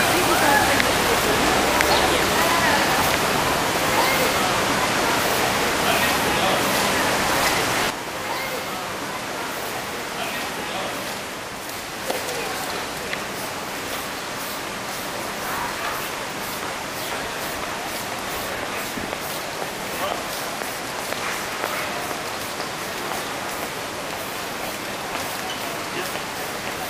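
Outdoor ambience: a steady noisy hiss with indistinct voices behind it. The level steps down abruptly at a cut about eight seconds in.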